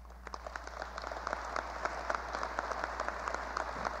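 Audience applauding: many hands clapping irregularly, breaking out right after an applause line and carrying on steadily, over a constant low hum.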